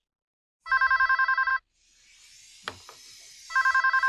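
A telephone ringing with an electronic warbling trill: two rings, each about a second long, the first a little under a second in and the second near the end. Between the rings comes a soft rustling and a single knock.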